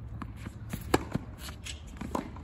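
Tennis rally on a hard court: one sharp racket-on-ball hit about halfway through, with lighter ball and shoe impacts and scuffing footsteps around it.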